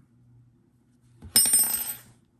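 A single sudden metallic clink with a short high ring, about a second and a half in.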